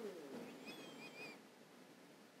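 Faint bird chirping: a few short, high notes about half a second to a second and a half in.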